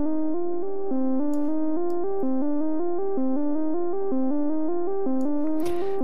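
VCV Rack software modular synth, VCO-1 oscillator through the VCF filter, playing a five-step sequence of quantized notes. It loops a short melodic pattern of even steps, several notes a second, in the mid range.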